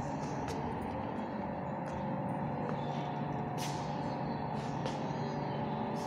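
Steady mechanical room hum with a few faint steady tones, and a few faint clicks.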